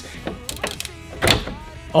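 Carbon fibre skid plate knocking and scraping against the car's plastic underbody as it is slid into place, with a few clicks and one louder knock a little past the middle.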